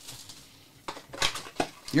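Cardboard Panini Prizm football card box handled and opened by hand: quiet at first, then a few short clicks and scrapes of cardboard from about a second in.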